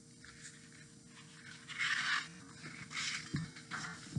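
Rustling and scraping of a hardcover picture book being handled, with two louder swishes about two and three seconds in and a soft knock a little after.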